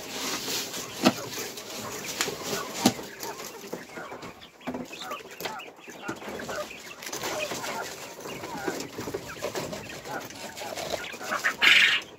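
Caged Texas quail chirping and clucking, over rustling and clicking as grain feed is tipped from a plastic bag into the cage's feeder trough, with a louder rustle of the bag and grain near the end.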